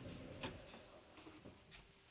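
Near silence: quiet room tone with a few faint clicks, the clearest about half a second in.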